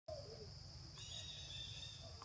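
Faint tropical-forest ambience: a steady, high-pitched insect drone, with a thin, high, steady call joining about halfway through.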